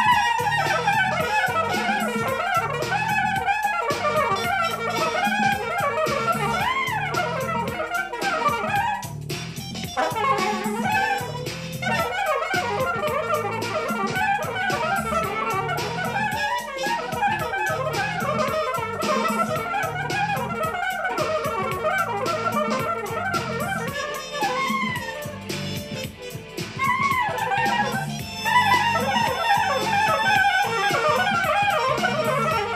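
Soprano saxophone playing a smooth, jazzy solo melody over a backing track with a steady beat and a bass line. The saxophone pauses briefly a few seconds before the end, then comes back in.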